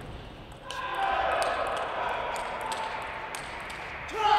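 A table tennis rally: the celluloid-type plastic ball clicks sharply off the bats and the table several times, a few tenths of a second apart. From about a second in, a murmur of crowd voices runs underneath.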